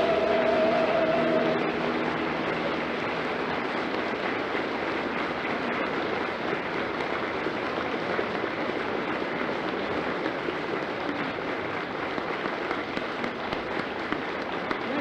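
A final held sung note dies away about a second and a half in, and audience applause follows.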